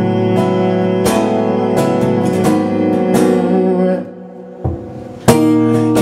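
Acoustic guitar strumming chords at a steady pace. About four seconds in it drops quiet for a moment, with one soft strum, before a hard strum brings it back.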